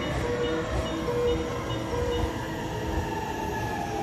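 Thunderbird limited express electric train pulling into the platform and slowing, with a low rumble and a motor whine that falls steadily in pitch as it brakes. A tune of short repeated notes plays over it.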